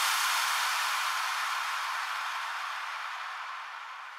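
The closing noise wash of a psytrance track: a hiss of white noise left after the kick and bass have cut out, fading away steadily.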